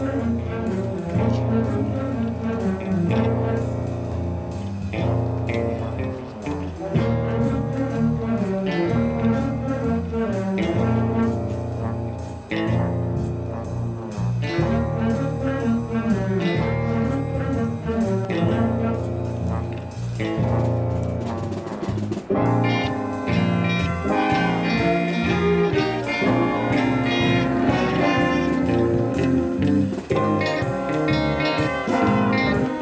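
High school band playing a piece on saxophones and brass, with the music going on throughout.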